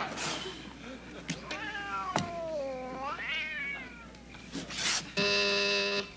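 Laughter fading at the start. A long meow-like cry follows, gliding down and then back up. Near the end comes a steady electric buzz from a wall intercom's call button being pressed.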